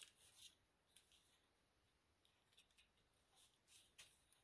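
Very faint, brief scratches of a small craft knife working at the taped edge of a paper sheet, lifting the tape; otherwise near silence.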